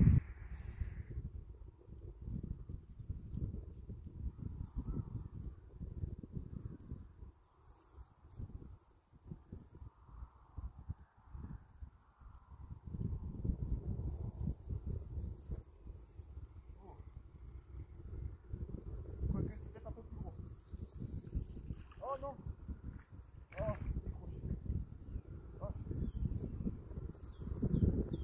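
Wind buffeting the microphone in low rumbling gusts, easing off for a few seconds in the middle. Two short high-pitched sounds come near the end, about a second and a half apart.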